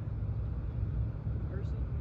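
Steady low outdoor rumble with no distinct event, and a faint short spoken word about one and a half seconds in.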